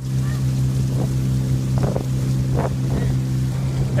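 Outboard motor of a small wooden river boat running at a steady hum, with several short splashes about every second as water is bailed out of the bottom of the boat.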